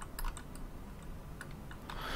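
Faint, irregular clicks from a computer keyboard and mouse being worked at a desk, a handful spread over about two seconds above a low, steady hum.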